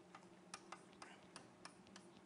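Faint, irregular taps and clicks of chalk writing on a blackboard, about half a dozen strokes, over a low steady room hum.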